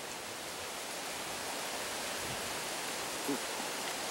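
Steady, even hiss of outdoor background noise.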